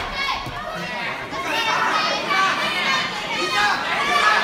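Spectators shouting and calling out, many young voices overlapping with no single speaker standing out.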